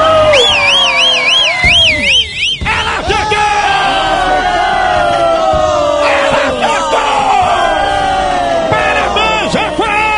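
Crowd sound effect of many voices cheering and yelling, celebrating a correct answer. A fast warbling whistle sounds over it for about two seconds near the start.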